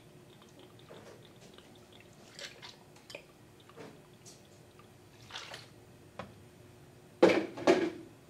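Heavy cream trickling and dripping from a bottle's pour spout into a steel jigger, faint, with a few small clinks. A louder, short clatter comes about seven seconds in.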